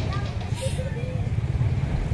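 A pause in a man's speech over a microphone and loudspeaker: a steady low rumble runs on underneath, with only a few faint fragments of voice.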